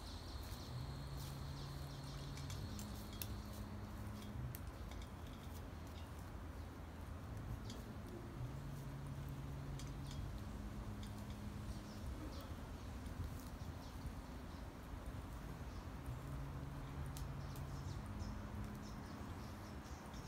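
Quiet outdoor background noise, with a faint low drone that steps between two pitches in a slow repeating cycle and a few scattered faint ticks.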